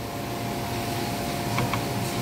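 Steady background hum and noise with a faint constant tone, and two faint light ticks near the end.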